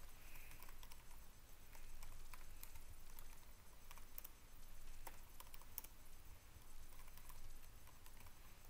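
Computer keyboard being typed on: faint, irregular key clicks, several a second with short pauses, over a low steady hum.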